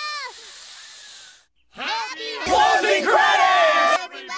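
A loud hiss of about a second, then, after a short pause, several cartoon voices yelling together, loudest over the last two seconds.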